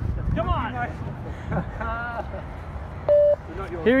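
A single short electronic beep from a beep-test (multi-stage fitness test) recording, about three seconds in. It is one flat, steady tone that marks the end of a shuttle, the moment the runner must reach the line.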